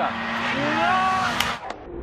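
Engine of a small turbocharged Fiat Cinquecento hill-climb race car running as it climbs the road towards the spectators, heard under nearby spectators' voices. About one and a half seconds in, the sound turns dull and muffled.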